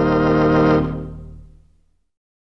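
Hammond organ holding the final chord of a tropical instrumental, with a light wavering vibrato. The chord begins to fade about a second in and has died away by the end.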